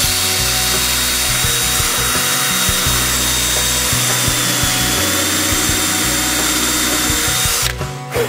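Cordless drill spinning a FlushMount carbide counterbore bit, cutting a recess into white melamine board: steady cutting noise with a thin high whine, held at full depth, then cutting off just before the end.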